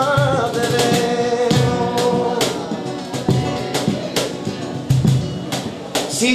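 Live flamenco song: a man's voice holds a long sung note over a strummed Spanish guitar, with low percussive thuds underneath.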